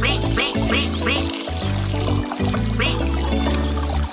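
Upbeat children's-song music with a steady bass beat, over which a cartoon duckling quacks: four quick falling quacks in the first second or so and one more about three seconds in.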